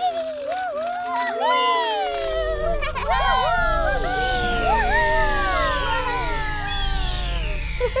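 Several cartoon children's voices making wordless, gliding playful calls that rise and fall in pitch and overlap, over light background music. A low rumble joins in about two seconds in.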